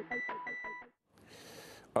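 Electronic title-theme music with a fast, even pulsing beat and steady high beeping tones, ending abruptly just under a second in. Faint studio hiss follows, and a man's voice begins at the very end.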